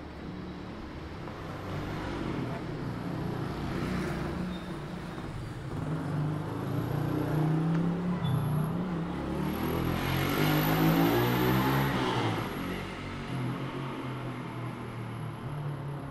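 A motor vehicle passing along a narrow city street: its engine builds over several seconds, is loudest about ten to twelve seconds in, then fades away.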